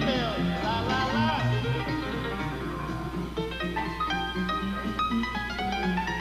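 Jazz piano played in a small-group performance, a stream of quick single notes and chords over a steady low hum.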